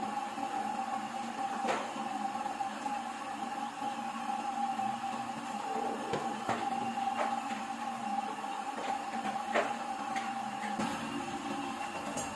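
Heidelberg sheet-fed offset printing press running steadily, a constant hum with a held mid-pitched tone. A few sharp clicks come through it at irregular moments.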